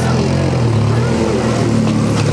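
Opel Astra GSI rally car's engine idling steadily.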